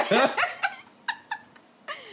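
People laughing hard, a loud high-pitched laugh that trails off into a few short separate bursts within the first second and a half.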